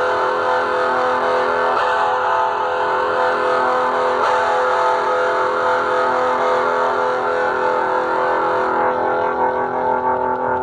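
Distorted electric guitar holding one long sustained chord, ringing steadily; its bright upper edge fades about nine seconds in.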